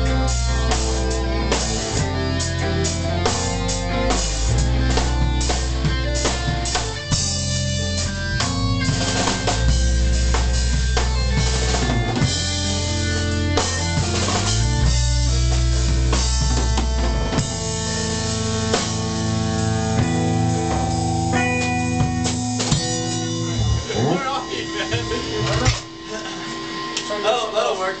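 A rock band playing live in a small room: electric guitars over a low bass line and a drum kit, the bass notes changing every couple of seconds. Near the end the low notes drop out and the playing breaks up as the piece ends.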